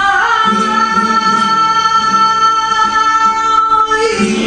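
Flamenco tientos recording: a singer holds one long note, sliding up into it at the start, over acoustic guitar.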